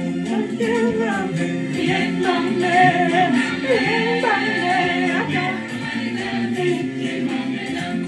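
Bassa-language gospel praise song sung by a choir in harmony, several voices together with little or no instrumental backing. Some voices slide up and down in pitch about halfway through.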